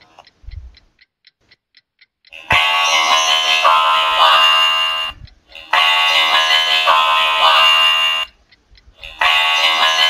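Electronic music. It opens with soft ticks, about five a second, for two seconds, then comes in loud passages of dense, bright pitched sound about two and a half seconds long, each cut off by a short silence.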